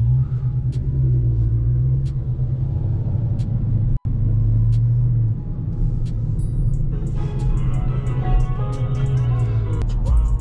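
Low, steady rumble of the Dodge Charger Scat Pack's V8 engine moving at low speed, heard inside the cabin, with hip-hop music playing over it: at first mostly a beat with regular ticks, then a melody joins about seven seconds in. The sound cuts out for an instant about four seconds in.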